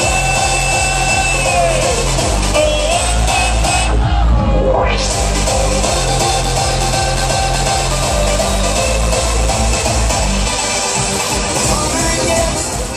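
Electronic dance music from a DJ set played loud over a PA system, with a steady kick-drum pulse under sustained synth tones. About four seconds in, the highs briefly drop out and then sweep back in.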